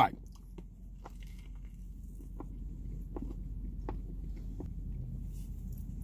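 A person chewing a mouthful of grilled chicken sandwich with faint, irregular mouth clicks, over a steady low hum.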